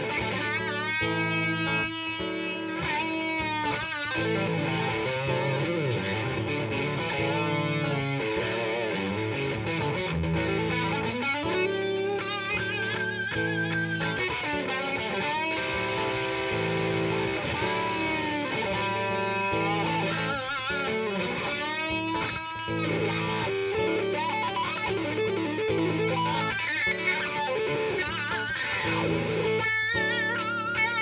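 Electric guitar (Nash S-57 with Lollar single-coil pickups) played through a Two-Rock amp with a ThroBak Stone Bender fuzz pedal: blues lead lines with string bends and vibrato over a repeating chord pattern.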